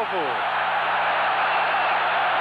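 Large football stadium crowd cheering, a dense steady wall of noise in an old broadcast recording with a low steady hum beneath it. A male commentator's voice trails off in the first half second.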